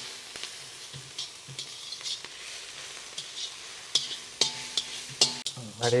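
Steel spatula scraping and clinking against a large steel wok while chopped vegetables stir-fry in hot oil, over a steady sizzle.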